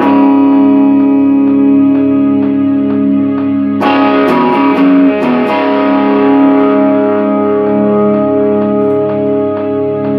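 Electric guitar played through distortion: sustained ringing notes over a steady beat, with a burst of harder, brighter strummed chords about four seconds in that lasts about a second and a half.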